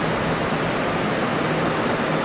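Steady, even hiss of classroom room noise with a faint low hum underneath.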